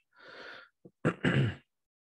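A man's audible intake of breath, then a short breathy sigh with a little voice in it, then quiet.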